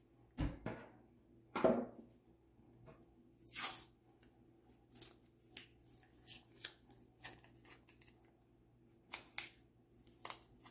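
Masking tape being pulled off its roll and handled on paper: a longer ripping rasp a few seconds in, then a string of small sticky crackles and clicks, with a soft thump near the start.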